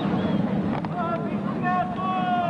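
People's voices outdoors: chatter, with a long, high-pitched held call in the second half, over a steady low rumble.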